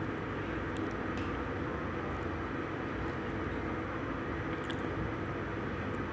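Steady background hum of a metro station concourse, with a few faint ticks.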